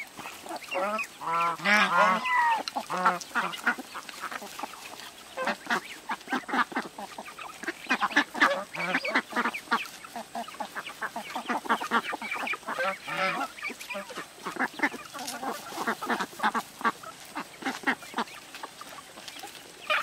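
A flock of domestic ducks quacking continuously in rapid, overlapping calls, with a few longer pitched calls in the first three seconds.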